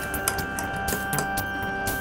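Fingers handling the unpowered Hologram Microcosm pedal's knobs and footswitches: scattered small mechanical clicks and rubbing from the metal enclosure and controls.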